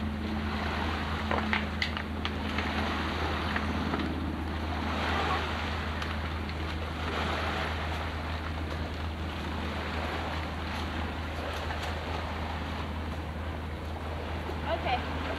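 Steady rushing outdoor noise picked up by a home camcorder's microphone, over a low steady hum, with a couple of sharp knocks about a second and a half in.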